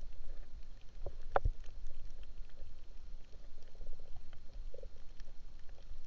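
Underwater ambience on a spearfishing dive: a steady low rumble with scattered faint clicks and crackles, and one sharper knock about a second and a half in.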